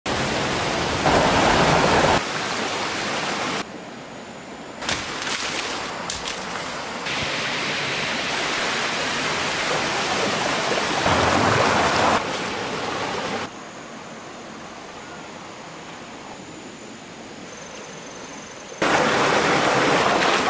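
Rushing water of a rocky forest stream, its level jumping up and down abruptly several times as the shots change, with a few sharp knocks about five to six seconds in.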